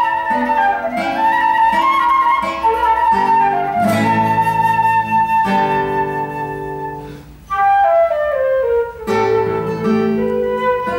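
Flute playing a melody over classical guitar accompaniment, with no voice. The music dips briefly a little past seven seconds, then comes back with a falling run.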